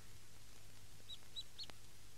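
A small bird chirping three short times about a second in, over a faint steady low hum of background ambience.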